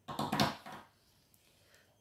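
Plastic pens and markers clattering against one another on a wooden table as one is picked out of the pile, in a short burst lasting under a second.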